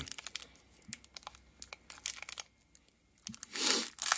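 Foil booster-pack wrapper crinkling in scattered small crackles as fingers pick at its sealed edge, then a short, louder tear near the end as the pack starts to rip open.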